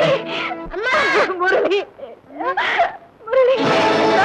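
A woman wailing and sobbing in grief, in broken cries with short breaks, over the film's background music. The orchestral score swells in loudly near the end.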